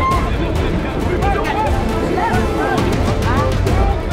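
Background music with a steady low pulse and held tones, over match sound in which voices call out in short shouts.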